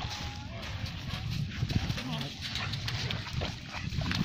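A yellow Labrador retriever giving excited barks and whines, eager for the ball to be thrown again, over a steady low rumble.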